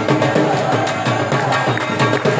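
Saraiki jhumar dance music: a fast, even drum rhythm with a sustained melody line over it.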